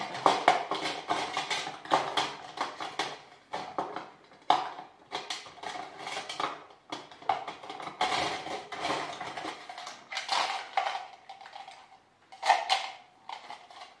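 Makeup items being handled and rummaged through: small plastic and metal containers and tools clicking and clinking against each other in irregular knocks.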